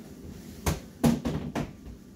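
A few sharp knocks and clatters, four in under a second, as a hospital chair is handled and moved against nearby equipment.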